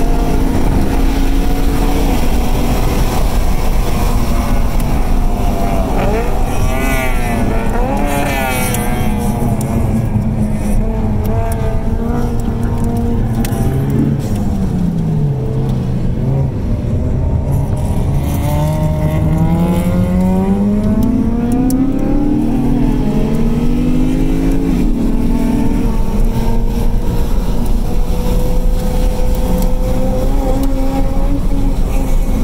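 Lexus RC F's 5.0-litre V8 heard from inside the cabin at track speed, its pitch falling and climbing with speed: it drops away about halfway through, then climbs steadily and dips a couple of times near the end.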